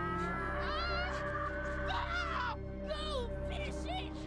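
Children yelling and screaming in a few short, high, pitch-bending cries over a low, sustained dramatic music score.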